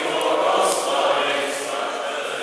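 Many voices singing together in sustained notes, a choir or a standing assembly singing as one.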